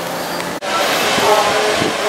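A steady rushing noise of wind and ocean surf, broken by a brief dropout about half a second in.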